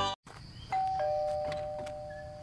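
A two-tone doorbell chime: a higher note, then a lower one about a third of a second later, both ringing on and slowly fading.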